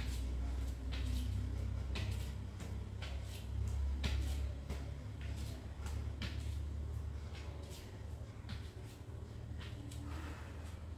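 Soft thuds of bare feet landing and stepping on a yoga mat during a standing warm-up of knee raises and overhead reaches, coming roughly once a second and unevenly spaced, over a steady low hum.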